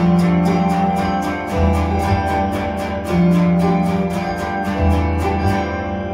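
Instrumental live music from electric guitar and keyboard: an evenly picked guitar figure of about four or five notes a second runs over sustained chords, with low bass notes changing about every second and a half. Near the end the picking stops and the chords are left ringing and fading.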